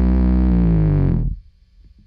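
Electric bass guitar (Fender Precision Bass Special) played through a Barber Linden Equalizer pedal into a Fender Princeton Reverb amp: one low note left ringing, then cut off about a second and a quarter in.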